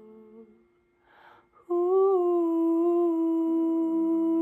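A woman's voice singing wordless held notes: a soft note fades out, a breath is drawn about a second in, then a loud, steady sustained note begins, and a second, lower tone joins it near the end.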